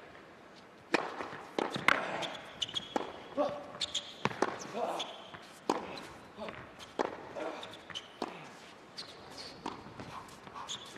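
Tennis ball bouncing sharply on an indoor hard court before a serve, then the serve and the racket-on-ball strikes and bounces of a rally, with players' breathing and grunts.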